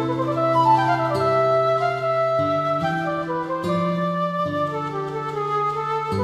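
Instrumental chamber music in C major with a silver flute carrying the melody. It opens with a quick rising run of notes, then holds longer tones over sustained lower chords that change every second or so.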